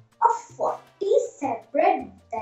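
A young girl's voice reciting a poem aloud, with lively swings in pitch from line to line.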